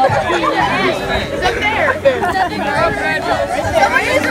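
Many teenagers' voices at once, overlapping and out of step, chanting song lyrics together as a group.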